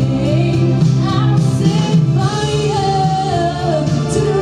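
A woman singing a solo vocal line into a microphone over instrumental accompaniment; in the second half she holds one long note with vibrato.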